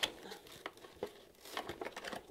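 Clear plastic blister packaging crinkling, with a few light clicks, as a small toy figure is worked loose from it.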